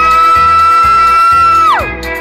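A loud, high whoop held on one pitch, sweeping up at its start and dropping away near the end. Under it, an electric guitar plays a polka over a steady pulsing bass beat.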